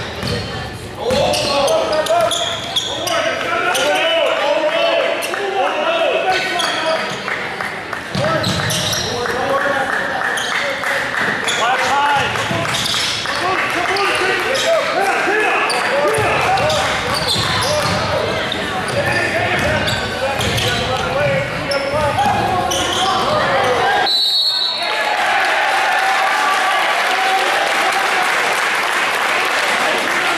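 Crowd and players' voices echoing in a gymnasium during a basketball game, with a basketball bouncing on the hardwood court throughout. About three-quarters of the way through the noise briefly drops and a short high whistle sounds.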